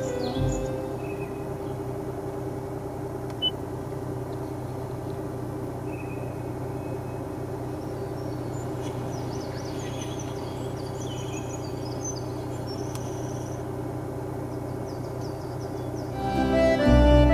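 A steady low hum, with faint bird-like chirps in the middle stretch.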